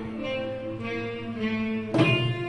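Arab music ensemble playing a soft passage: a slow melody of held notes, with the drumming dropped out. A percussion stroke comes back in right at the end.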